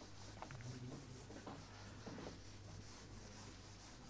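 Handheld duster rubbing across a whiteboard to wipe off marker writing: faint, in several short strokes.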